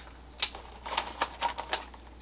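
Packing paper being handled and folded around a parcel: scattered short crackles and ticks, several in quick succession in the second half.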